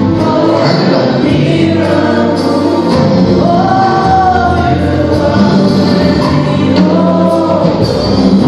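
Gospel worship music: a group of voices singing over sustained low accompaniment, loud and steady, with a long held sung note in the middle.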